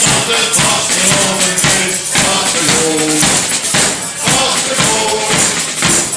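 A small carnival brass band playing a song: a bass drum and snare drum beat time under trumpets and saxophone, with a tambourine-style jingle ring shaking along with the beat.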